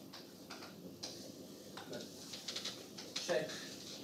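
Chalk writing on a blackboard: a run of short scratching and tapping strokes as characters are written. A short low sound about three seconds in.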